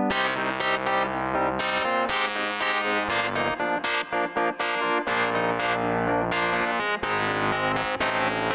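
Electric piano sound from an Arturia AstroLab keyboard, played as a continuous run of chords and notes with its brightness turned up and effects added on the fly.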